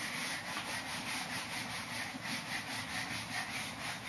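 Whiteboard eraser rubbing across a whiteboard in quick repeated back-and-forth strokes, wiping off marker writing.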